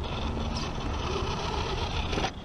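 Axial SCX10 RC rock crawler's electric motor and geared drivetrain whining steadily under load as it crawls over rocks close by.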